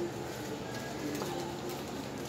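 A pigeon cooing in short, low notes over a steady low hum.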